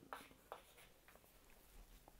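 Faint chalk strokes and taps on a chalkboard: a few short, soft clicks in the first second, then near-silent room tone.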